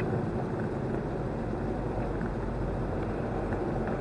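Steady road and engine noise of a car heard from inside the cabin while it drives slowly, at about 20–25 mph, in slowing traffic: an even low rumble with no sudden events.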